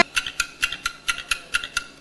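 Game-show clock sound effect ticking evenly, about four thin ticks a second. It is the countdown the contestants must wait out before they may run for the bell.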